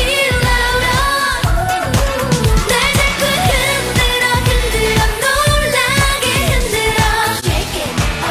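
Upbeat K-pop dance song performed live: a woman singing lead into a handheld microphone over a steady dance beat.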